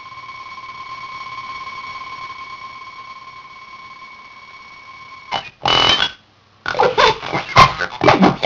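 Circuit-bent Furby's sound chip putting out a steady, held electronic tone, then about five seconds in breaking into loud, stuttering glitched fragments of its voice with a brief gap between bursts.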